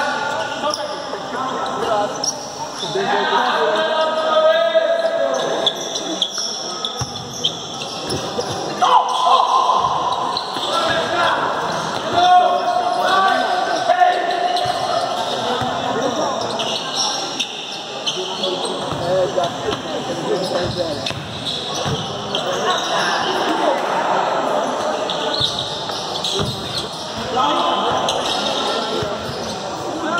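Futsal ball being kicked and bouncing on a hard indoor court, knocks echoing in a large gym hall, with players shouting and calling during play.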